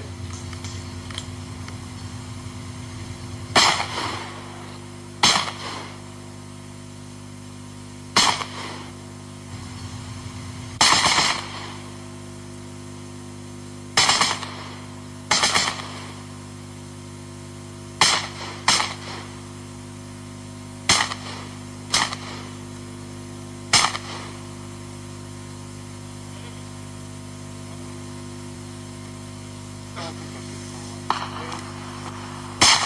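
Gunshots fired singly at irregular intervals, about eleven in all, some pairs about a second apart, over a steady low hum.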